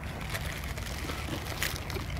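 Steady, fairly quiet outdoor background noise with a low rumble and a couple of faint ticks, picked up while walking in a park.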